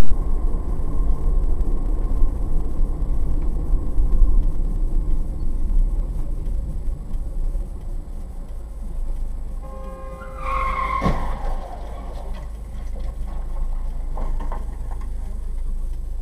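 Steady low rumble of a car on the road. About ten seconds in comes a short squeal with a horn-like tone, then a single sharp knock just after it.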